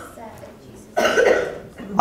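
A person coughing, one short noisy burst about a second in.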